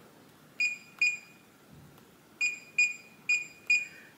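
Reliabilt electronic keypad deadbolt beeping once for each key pressed as the programming code is entered: six short, high beeps, two about half a second apart, then after a pause of over a second four more in quick succession.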